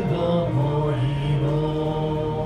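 A small group singing a hymn together, the melody moving in slow, held notes.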